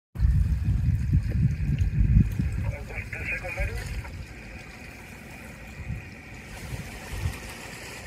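Wind rumbling on the microphone for the first two to three seconds, then a faint voice over a steady hiss.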